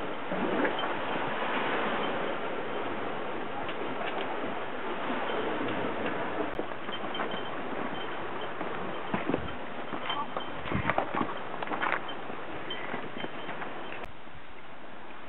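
Wind rushing over the camera microphone, with sea surf behind it. Late on, a quick run of sharp knocks: hikers' footsteps and trekking-pole tips striking rock.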